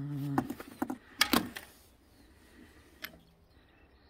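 A hummed 'mm' at the very start, then a few sharp metallic clicks about a second in and a lighter click near three seconds, as a bicycle disc brake caliper is handled and slid onto its mount over the rotor.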